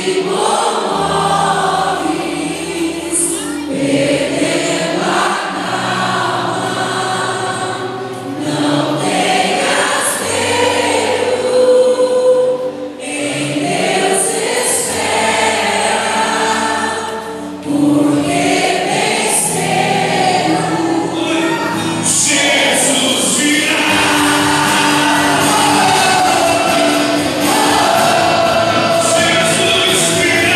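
Live Christian worship music: a praise band with electric guitar and keyboard under held bass notes, backing many voices singing together.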